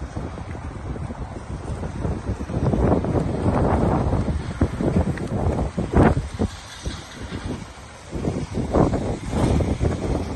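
Wind buffeting the microphone in uneven low gusts that swell and fade, loudest about three to four seconds in, again around six seconds, and near the end.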